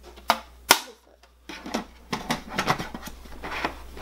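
Plastic lid of a WOPET automatic pet feeder's food hopper being fitted back on: two sharp knocks in the first second, then a run of lighter, irregular clicks and taps as it is worked into place.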